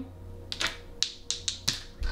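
Tarot cards being handled by hand on a tabletop: a quick run of about half a dozen light, sharp taps and clicks as fingers and card edges strike the cards and the table.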